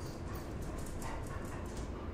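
A small dog's claws clicking rapidly on a tiled floor as it runs, a quick patter of sharp clicks that eases off near the end.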